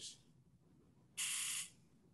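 Near silence, broken a little past the middle by one short, steady hiss lasting about half a second.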